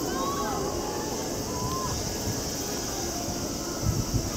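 Distant voices of spectators calling out in short, scattered shouts over a steady high outdoor hiss.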